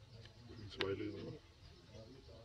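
A sharp click about a second in, followed at once by a short, low cooing call from a dove, over a faint low hum.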